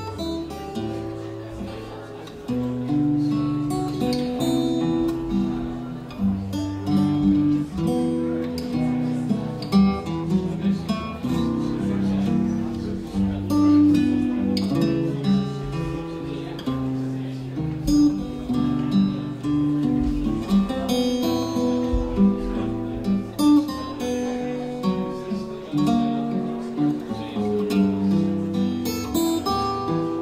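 Solo jazz guitar on a Ken Parker acoustic archtop guitar: a slow ballad of sustained chords with a bass line and a melody moving over them, the notes left to ring.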